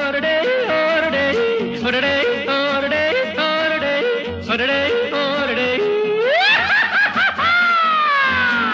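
Male voice yodeling, flipping rapidly between low and high notes over the song's acoustic guitar backing. About six seconds in it slides steeply up into a high held note that then falls slowly away.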